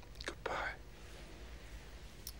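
A person's voice: one short, soft, breathy sound about half a second in, over a low steady hum.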